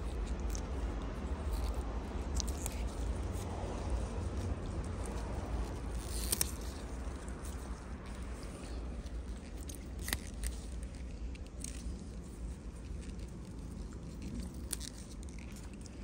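Pea vines rustling as pea pods are picked by hand, with a few sharp snaps as pods break off the stems, over a steady low rumble.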